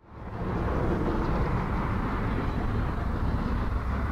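Steady background ambience with a low rumble, fading in at the start, like a field recording near traffic.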